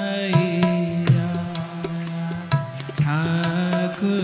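Devotional singing: a voice holding long, slowly gliding notes over steady instrumental accompaniment, with frequent percussion strikes.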